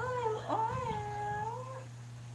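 A cat meowing twice: a short call, then a longer drawn-out one.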